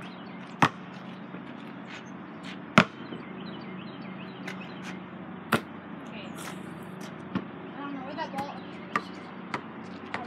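A basketball bouncing on hard ground: single sharp bounces a few seconds apart, the loudest about three seconds in, with fainter ones toward the end.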